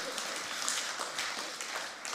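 A congregation applauding, many hands clapping, fading a little near the end.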